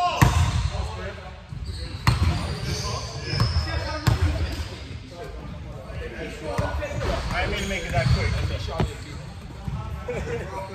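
A basketball bouncing on a hardwood gym floor, a few sharp thumps spaced a second or two apart, with players' voices in the background.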